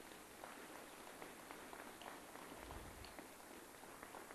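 Faint applause: hand clapping from an audience.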